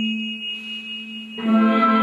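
Orchestral film-score music: a low note is held while higher tones fade, then a fuller, louder chord comes in about a second and a half in.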